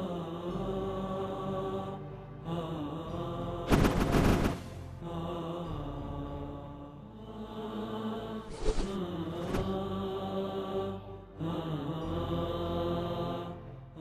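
Background music carried by a chanting voice in long, sustained, wavering notes. It is cut by sudden loud noise bursts about four seconds in and again around nine seconds.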